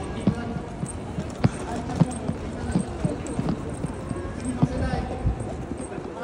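Footsteps of a crowd walking on stone paving: a scatter of sharp, irregular heel clicks, several a second, over a steady hubbub of background voices.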